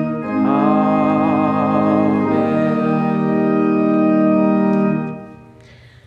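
Church organ playing the closing 'Amen' of the sung offertory, with voices joining in: a chord change just after the start, then a long held chord that is released about five seconds in and dies away in the room.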